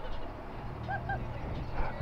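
Faint street background at a traffic stop with a low steady hum. Two quick, faint pitched chirps come close together about a second in.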